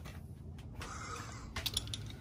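Faint handling noise, then a quick run of light clicks near the end, from a small diecast toy car being handled.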